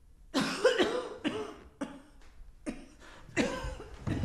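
A woman coughing about five times in a row, the first cough the loudest.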